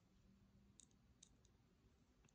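Near silence: faint room tone with three faint, short clicks, as of small items being handled.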